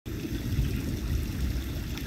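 Distant thunder: a low, steady rumble from an approaching storm.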